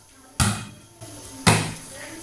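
A volleyball struck twice in forearm passes kept up in the air, about a second apart, each hit a sharp smack with a short ring.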